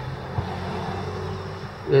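Steady low hum of a car idling, heard inside its cabin while stopped at a traffic light, with a faint tick about half a second in.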